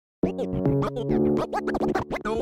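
Hip hop DJ remix starting with turntable scratching: rapid rising and falling pitch sweeps cut over held synth chords. It starts abruptly a moment in.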